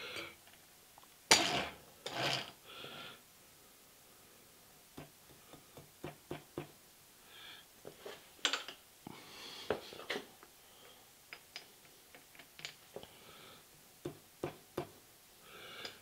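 Scattered light metallic clicks and ticks from hand adjustments to a machine-shop setup while a dial test indicator is brought to zero. A few louder, short knocks come in the first few seconds.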